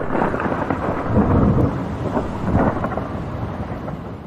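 Thunder sound effect: a long, uneven rumble of thunder that slowly fades toward the end.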